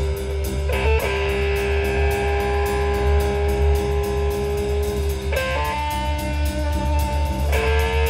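Rock band playing live: electric guitars hold long sustained notes that change about a second in, about five seconds in and near the end, over a steady pulsing bass and drums.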